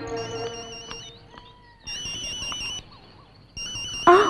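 Mobile phone ringing: an electronic trilling ringtone sounding in bursts of about a second, three times, while background film music fades out in the first two seconds.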